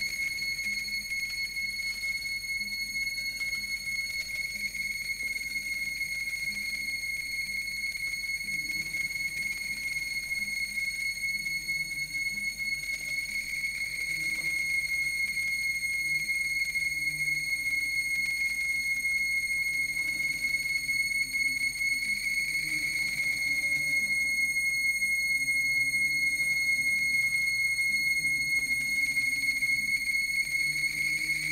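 Amplified daxophone drone music: a steady, high, whistle-like tone is held throughout, over low, wavering, gliding notes that grow louder about halfway through.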